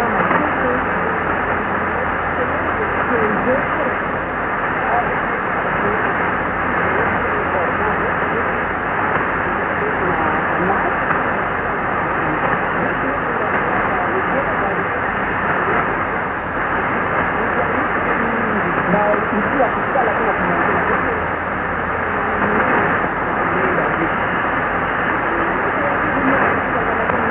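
Weak shortwave AM broadcast of Radio Congo on 6115 kHz, heard through a Kenwood TS-2000 receiver: a faint voice buried in steady static. The audio stops sharply at about 3 kHz, the receiver's AM filter.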